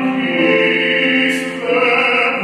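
Baritone singing a classical art song in held, sustained notes, accompanied by grand piano.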